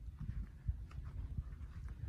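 Footsteps of someone walking on dirt while carrying a phone camera: irregular soft low thumps, several a second, over a low rumble.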